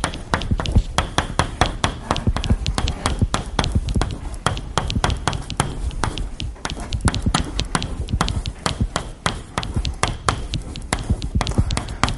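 Chalk writing on a blackboard: a quick, uneven run of sharp taps as each stroke of the chalk lands.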